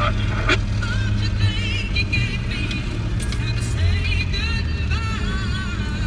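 Steady low drone of a Land Rover Defender 90 driving slowly, heard from inside the cab. Faint music with a wavering melody plays over it.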